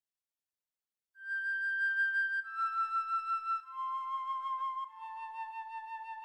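Slow relaxation music: a solo flute plays four long held notes, each lower than the last, with a gentle vibrato. It comes in about a second in, out of total silence.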